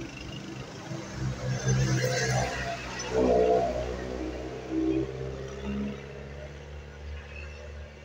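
A motor vehicle's engine running on the road, a steady low hum that swells louder about two and three seconds in.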